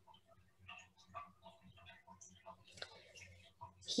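Near silence: faint, irregular small clicks and ticks over a low steady hum.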